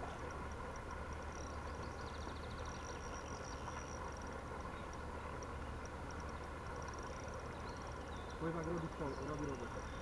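Outdoor ambience with faint, repeated high-pitched insect chirping from the grass over a steady low rumble. A man's voice comes in near the end.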